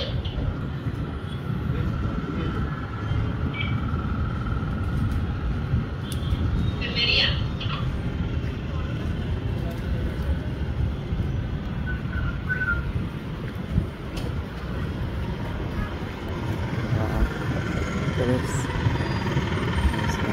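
Outdoor city ambience: a steady low rumble of distant traffic and wind, with a few brief higher chirps or squeaks.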